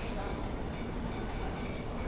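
Shopping-mall ambience: a steady din of distant crowd voices with no distinct events.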